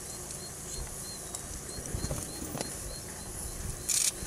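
Open-air ambience: a steady hiss with a row of faint, short high chirps in the first half and a few soft low thumps. A short, sharp rustle or knock near the end is the loudest sound.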